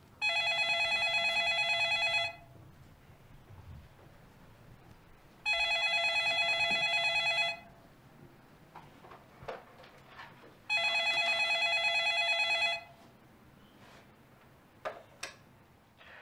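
Home landline telephone ringing with an electronic warbling trill: three rings of about two seconds each, roughly three seconds apart, signalling an incoming call.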